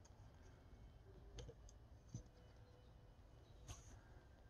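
Near silence with a few faint clicks from a plastic Transformers action figure being handled and set down on a tabletop.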